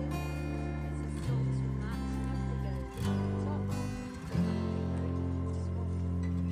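Background music: strummed acoustic guitar, its chords changing every second or two.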